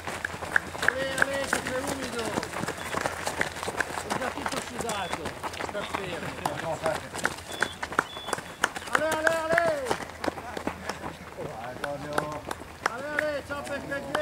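Runners' footsteps crunching past on a gravel road, with voices calling out loudly now and then, loudest about two-thirds of the way through, and a few short high beeps.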